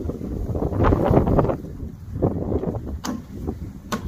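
Wind buffeting the camera microphone, swelling in the first half, with two short knocks near the end.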